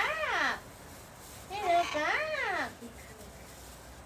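A pet parrot making two drawn-out, speech-like calls, each rising and then falling in pitch. The second, longer call comes about one and a half seconds in.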